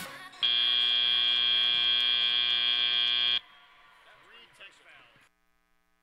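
FIRST Robotics Competition end-of-match buzzer sounding as match time expires: one loud, steady buzzing tone held for about three seconds, cutting off abruptly.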